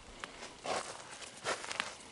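A few footsteps on dry, hard field soil and crop stubble, each a short crunch.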